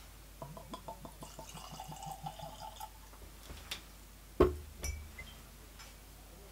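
Bourbon poured from its glass bottle into a tasting glass: a run of quick glugs, about six a second, lasting about two and a half seconds. Then a loud knock about four seconds in and a softer knock just after.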